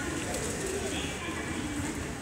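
A bird calling low, twice, in wavering notes over steady station background noise.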